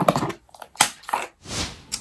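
Close handling noises as a plastic sun cream tube is picked up: a few small clicks and knocks, then a short hiss near the end.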